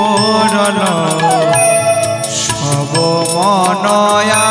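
Bengali kirtan devotional music: a male voice holding a long, wavering melismatic line over a sustained keyboard drone, with a steady tabla and octapad beat.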